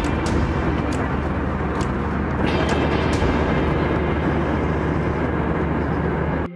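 Steady roar of a jet airliner's cabin in flight, with a low drone under it and a few faint clicks in the first few seconds.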